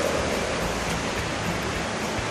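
Steady rush of water running over wet cave rock.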